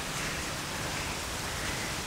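Steady, even hiss of background noise picked up by the microphone, with no other distinct sound.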